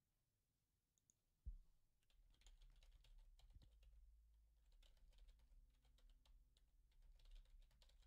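Very faint typing on a computer keyboard: a low thump about a second and a half in, then a steady run of quick key clicks.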